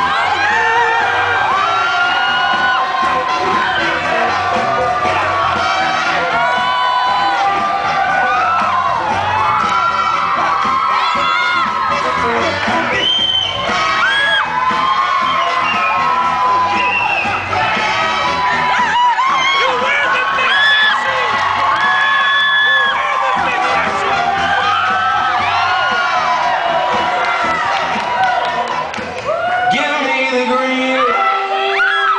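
A crowd cheering, shouting and whooping over loud dance music.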